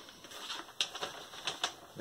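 A vinyl record album being handled: a few light clicks and soft rustles.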